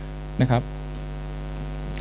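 Steady electrical mains hum, a low buzz with evenly spaced overtones, carried through the microphone and speaker system; a man says one short word about half a second in.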